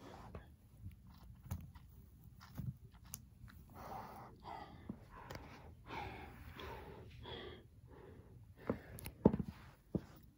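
Faint whispering voice, with light clicks and taps of plastic toy figures being handled on carpet; a couple of sharper clicks near the end.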